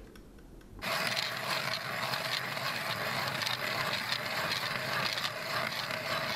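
Hand ice auger being cranked down into the ice. Its blades scrape and crunch steadily, starting suddenly about a second in.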